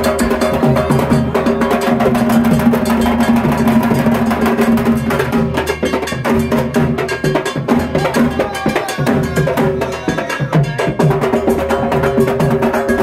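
Dhak, the two-headed barrel drum of Durga Puja, beaten rapidly with sticks in a dense, fast rhythm, with a steady held tone underneath for roughly the first half.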